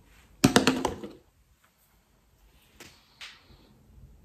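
A quick run of sharp knocks and clicks about half a second in, like objects being handled close to the microphone, followed by two faint clicks around three seconds in.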